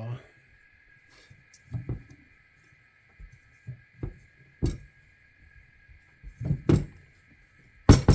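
Handling noise at a liquid-cooler radiator: scattered light clicks and knocks as a fan cable and a rubber plug are worked against the radiator's plastic end tank, more of them near the end, where the sharpest knock falls. A faint steady high hum runs underneath.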